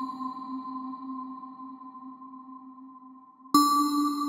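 A struck bell rings and slowly fades, its low tone wavering, then a second bell, a little higher in pitch, is struck about three and a half seconds in and rings on.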